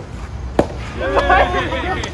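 A racket strikes a soft tennis ball once, a sharp hit about half a second in. A player's voice calls out for most of the last second.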